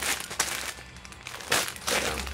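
Clear plastic packaging crinkling as a sealed bag is handled and lifted, with the loudest rustles near the start and again about one and a half seconds in.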